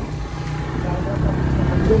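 Suzuki GSX-R150 motorcycle's single-cylinder engine running steadily under way, heard as a low, even hum with road rumble.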